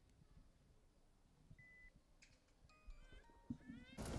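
Near silence with a few faint short tones: one held whistle-like note near the middle, then a quick run of stepped and rising chirps toward the end.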